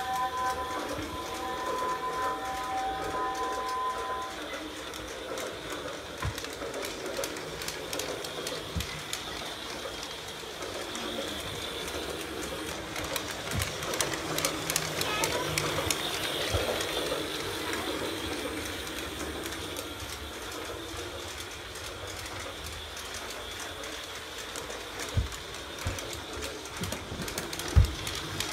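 Toy Christmas train running around its plastic track, a steady electric-motor whir and wheel clatter that grows louder as it passes close, with a few held tones in the first few seconds. A sharp thump near the end.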